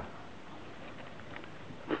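Quiet room noise: a low steady hiss with a few faint ticks.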